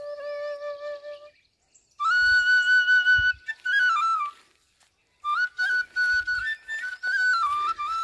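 Middle-D bamboo flute playing long held notes in short phrases with pauses between: a low note that ends about a second in, then long high notes with small turns, and after a second pause another high phrase that carries on.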